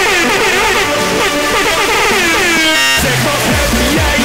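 Speedcore electronic music: a distorted, horn-like synth line swooping up and down in pitch. About three seconds in it breaks off briefly and heavy kick drums come in.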